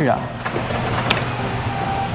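Claw machine's crane motor running steadily as the claw is lowered, with a small click about a second in.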